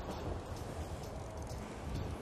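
Steady wash of sea surf breaking on rocks, an even hiss with no distinct strokes.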